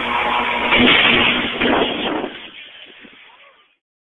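Loud, steady roar of a power line arcing through a burning tree. It fades away over about a second and a half and stops near the end as the circuit breaker trips and cuts the power.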